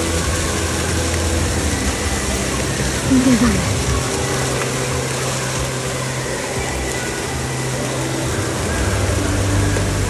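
Splash-pad water jets spraying and splashing steadily over a water park's background of voices and a low steady hum, with a short loud voice about three seconds in.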